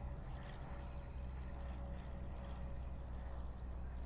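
Outdoor ambience: a steady low rumble with a faint, high-pitched insect buzz that fades in and out.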